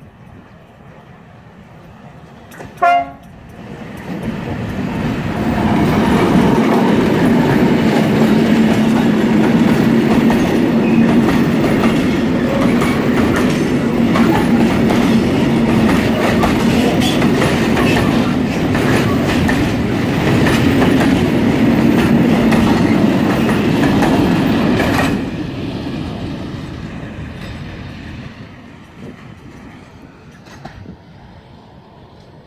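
Diesel-hauled freight train passing close by: a very short, loud horn blast just under three seconds in, then the locomotives and a long line of wagons rumbling and clattering over the rails. The sound drops sharply at about 25 seconds as the last wagon goes by and fades away.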